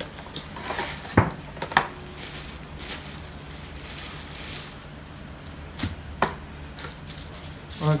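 Unboxing by hand: a cardboard box opened and a plastic bag rustling as the plastic propeller guards inside are unwrapped, with several sharp clicks and taps from the box and parts.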